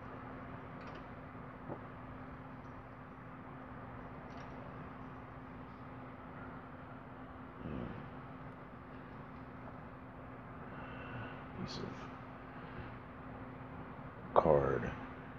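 Steady low room hum with one constant low tone, broken by a few faint light clicks and a soft knock about eight seconds in.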